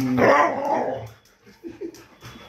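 A dog gives one drawn-out, bark-like call lasting about a second, then goes quiet apart from a few faint sounds.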